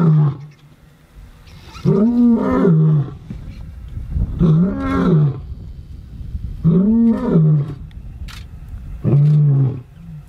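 Lion roaring: four long, deep calls spaced about two and a half seconds apart, each rising and then falling in pitch, with the end of an earlier call at the very start.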